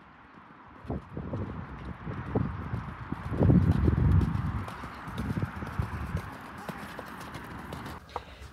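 A ridden horse's hooves thudding on grass as it runs across a field, the beats growing louder to a peak about three and a half seconds in, then fading as it moves away.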